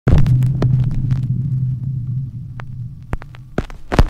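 Intro sound effect: a low hum that fades away over about three seconds, with scattered sharp clicks and crackles, ending in a loud short glitch burst just before the end.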